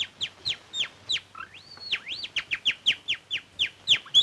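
Whistled canary-like chirping: a quick run of short falling whistle notes, about four a second, with two longer whistles that rise and fall near the middle.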